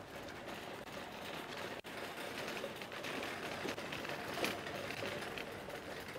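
Loaded metal shopping trolley rattling as it is pushed along a street, its wheels and wire basket giving a run of small irregular clicks.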